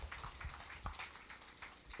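Quiet room tone of a hall with a seated audience: faint rustling and a few soft clicks, with no speech.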